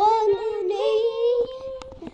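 A child singing, gliding up into one long held note that fades near the end, with a few faint knocks from the camera being handled.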